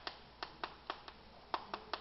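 Chalk striking a blackboard while characters are written: about seven short, sharp taps at an uneven pace.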